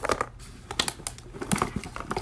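Hands rummaging through a fabric backpack: an irregular run of light clicks and rustles as items inside are handled and pulled out.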